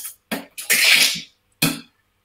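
A man imitating raw synthesizer pulses with his mouth, in the manner of glitch or clicks-and-cuts music: four short, hissy vocal bursts in an uneven rhythm, the longest about a second in.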